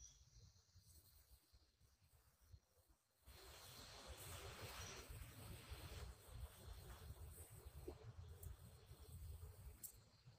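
Near silence. From about three seconds in there is a faint low rumble and light rustle.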